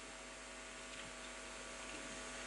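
Faint, steady electrical hum with a hiss underneath, from the microphone and sound-system chain while no one speaks into it.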